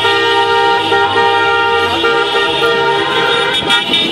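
Several car horns honking at once in celebration, long held blasts of different pitches overlapping, with the mix of horns changing about halfway through.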